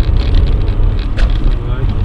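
Steady low rumble of a car driving on a wet road, heard from inside the cabin: engine and tyre noise.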